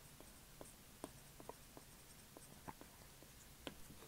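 Faint, irregular clicks of a stylus writing on a tablet screen, a few ticks a second over near silence.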